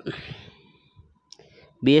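A short click, then a soft breath drawn in, with a second faint click about a second and a half in.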